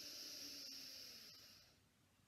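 A slow, soft in-breath through the left nostril, the right nostril held closed by the thumb, in alternate nostril breathing: a faint airy hiss that fades out near the end.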